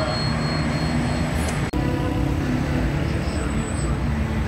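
Steady low mechanical rumble with a faint hum over it, broken by a momentary dropout a little under two seconds in.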